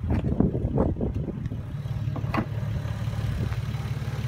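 Toyota Supra's naturally aspirated 2JZ-GE straight-six, fitted with an HKS intake and exhaust, idling steadily just after being started for the first time in a while.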